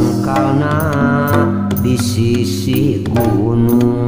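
Sundanese calung music in an instrumental stretch between sung lines: sustained pitched instrument notes, some with wavering pitch, over regular drum strokes.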